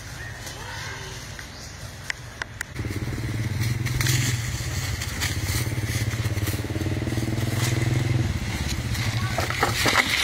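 A small engine running steadily, coming in suddenly about three seconds in and fading near the end, with crackling of dry leaves in the last second.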